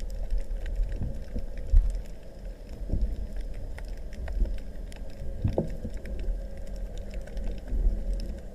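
Underwater sound picked up through a camera's waterproof housing: a steady low rumble of moving water with scattered faint clicks and a few louder surges every couple of seconds.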